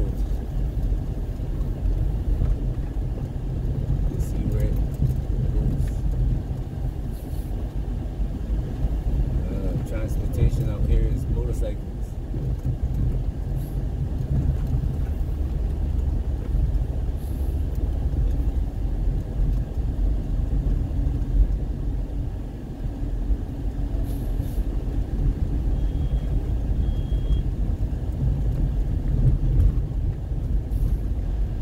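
A car driving slowly on a rough dirt road, heard from inside the cabin: a steady low rumble of engine and tyres on sand and ruts.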